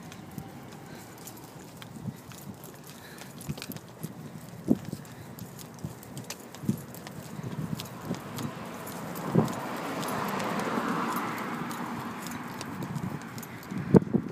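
Slow, irregular footsteps of a person walking on a brick sidewalk, a few scattered steps a second or more apart, over outdoor background; in the second half a broad rush of noise swells and fades away.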